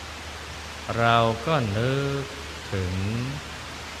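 Steady hiss of rain falling, with a low steady hum beneath it; a man speaks in Thai over it in two short phrases.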